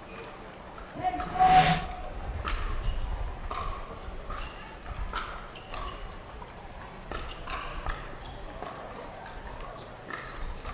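A pickleball rally: the hard plastic ball popping off paddles and bouncing on the court in a string of sharp pops at uneven spacing. About a second in, a short whoosh with a brief tone sounds as the logo transition plays.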